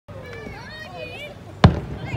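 Aerial firework shell bursting: one sharp bang about a second and a half in that trails off briefly, over people's voices.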